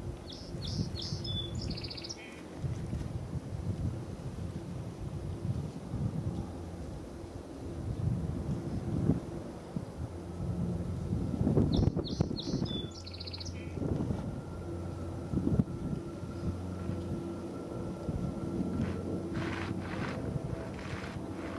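Boeing 787-9 with GEnx-1B jet engines rumbling steadily during its landing rollout, mixed with wind on the microphone. A small bird gives the same short, high chirping song twice, just after the start and about halfway through.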